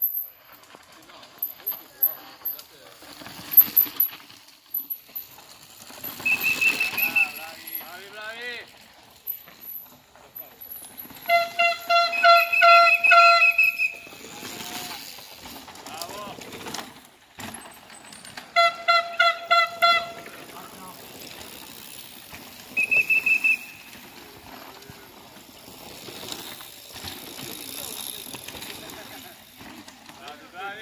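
Race spectators blowing whistles and shouting. The whistles come in short high blasts and in two longer runs of rapid repeated blasts.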